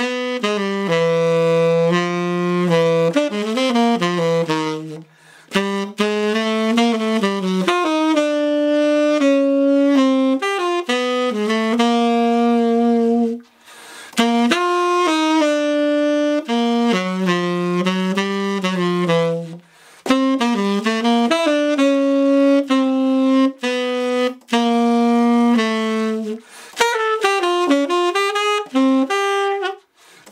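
Tenor saxophone playing the second part of a jazz saxophone duet on its own, a single melodic line in phrases with brief breaks for breath.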